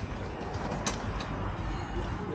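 Outdoor background noise: a steady low rumble with one sharp click about a second in.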